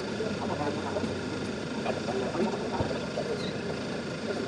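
Indistinct voices of several people talking nearby, over a steady low background hum.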